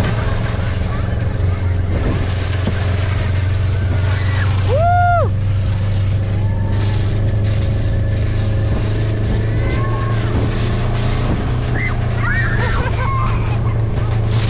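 Utility vehicle's engine running with a steady low drone while towing a sled over snow. A child's long high call rises and falls about five seconds in, with more shouts near the end.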